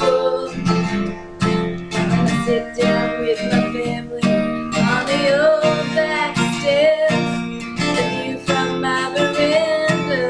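Acoustic guitar strummed in a steady rhythm of chords.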